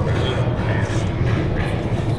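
Mine-ride train rolling along its track, a steady low rumble with no break.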